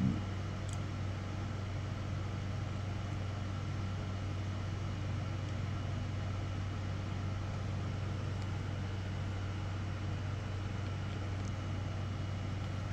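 A steady low mechanical hum, unchanging, with no other events: the room's background noise.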